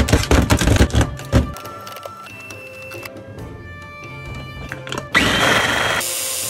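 A knife knocking rapidly on a cutting board for about the first second and a half. Then, after a quieter stretch, a small electric food chopper's motor starts abruptly about five seconds in, chopping a load of peeled garlic cloves.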